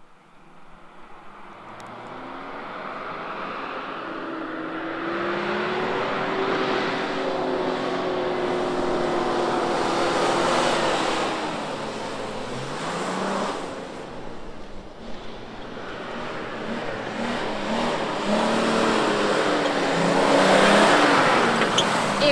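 A 4x4 SUV's engine revving hard as it drives over soft sand dunes, the pitch climbing, dropping back about twelve seconds in and climbing again, as with gear changes. The sound grows louder through the first half, eases for a few seconds, then swells again near the end.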